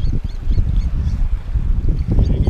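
Wind buffeting the microphone: an uneven, loud low rumble, with a few faint high chirps in the first half.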